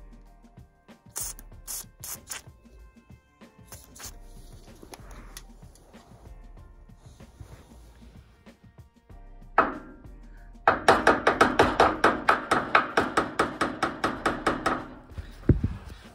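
Thermostatic radiator valve being tapped with a hammer to free its stuck pin: one knock, then a fast even run of light metallic taps, about six a second for some four seconds, in the second half. A few short hisses of WD-40 spray near the start.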